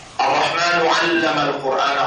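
A man's voice reciting Arabic Quranic verses, loud and close, starting suddenly a fraction of a second in after near-quiet room tone.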